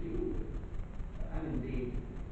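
Low cooing calls of a bird, two short phrases, one at the start and one past the middle.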